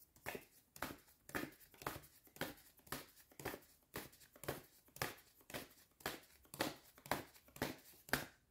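Deck of handmade paper oracle cards being shuffled by hand, a rhythmic papery swish about twice a second.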